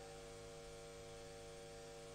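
Faint, steady electrical mains hum: several constant tones held without change.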